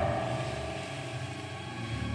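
Dark, droning horror-film score: a low rumble under a sustained mid-pitched tone that fades out over the first second and a half.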